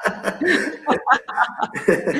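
A man and a woman chuckling together over a video call, in short bursts of laughter.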